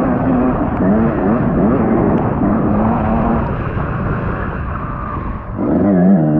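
Dirt bike engine running hard on the trail, its pitch climbing and falling again and again with throttle and gear changes. Near the end it backs off briefly, then opens up again.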